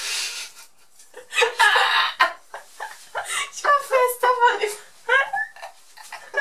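Two people laughing hard: breathy gasps at first, then a quick run of repeated pitched 'ha-ha' pulses.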